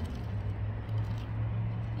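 Steady low hum of an idling vehicle engine, over a light wash of outdoor noise.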